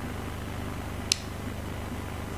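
Steady low hum of an open meeting-room microphone with no one speaking, broken by one sharp click about a second in.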